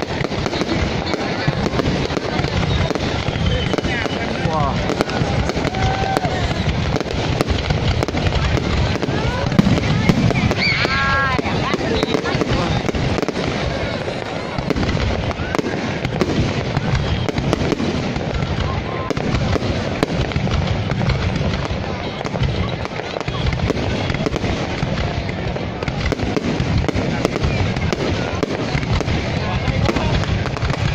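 Aerial firework shells bursting in a continuous, dense barrage of bangs and crackles.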